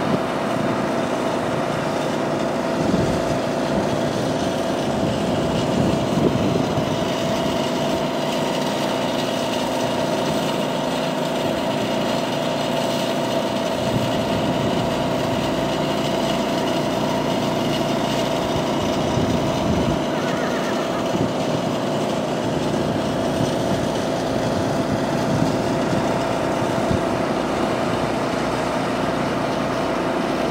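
A steady mechanical drone made of several held tones over a noise bed, unchanging throughout, like a motor running nearby.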